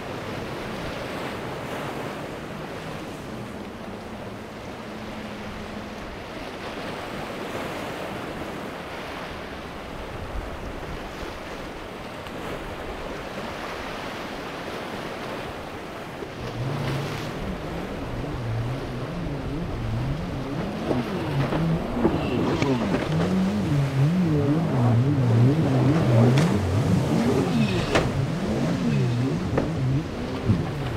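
Twin Mercury Verado V12 600 four-stroke outboards running through choppy inlet water, over a steady wash of waves. About halfway in the engines grow much louder, their pitch rising and falling again and again.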